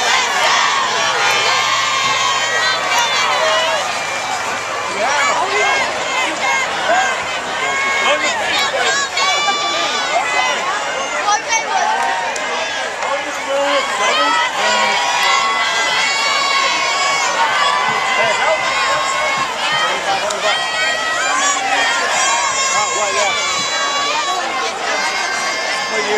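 High school football crowd in the stands, with many voices talking, shouting and cheering at once, among them higher-pitched yells of young people.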